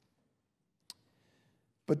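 A single short, sharp click about halfway through a quiet pause, followed by a faint brief hiss, then a man starts speaking near the end.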